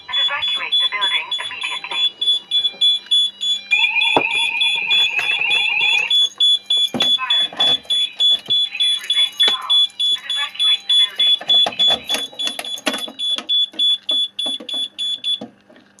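Fire alarm sounders sounding a rapidly pulsing high-pitched tone, two of them in sync. A second, faster chirping alarm tone joins about four seconds in for roughly two seconds. The alarm cuts off near the end when it is silenced at the panel.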